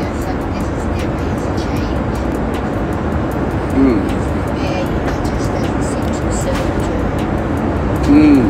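Steady rushing cabin noise of a private jet, at an even level throughout, with a short vocal sound about four seconds in.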